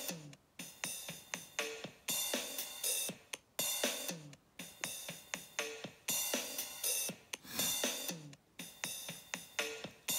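Electronic drum-machine beat from the DigiStix app, with kicks and hi-hats, chopped and stuttered by the GlitchCore glitch effect, the sound cutting out suddenly for short moments throughout.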